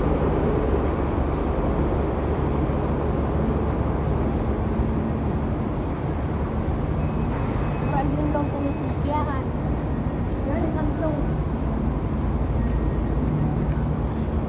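Steady low rumble of idling buses and road traffic, with a faint engine hum throughout. Faint voices are heard around the middle.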